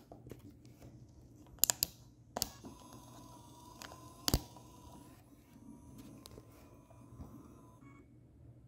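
Sharp clicks of the Kodak EasyShare Z760's buttons being pressed: a quick pair, another just after, and the loudest about four seconds in. A faint steady whine comes in after the third click and runs on under the rest.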